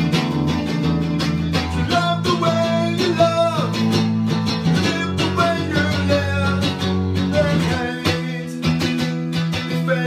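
A man singing while strumming chords on a hollow-body electric guitar played through an amp.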